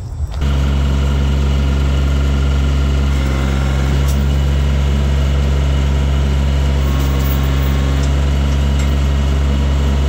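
Kioti CK4020 compact tractor's diesel engine running at a steady speed, coming in suddenly just after the start, while its hydraulics lift the rear-mounted flail mower.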